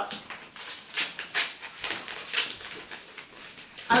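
A paper envelope being opened by hand: several short rustles and tears of paper.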